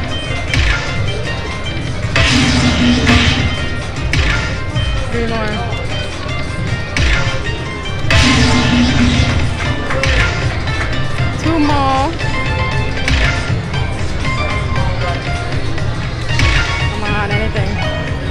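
Aristocrat Dragon Link slot machine in its fireball bonus: looping bonus music with a bright chiming hit every two to three seconds as the reels respin and fireballs land.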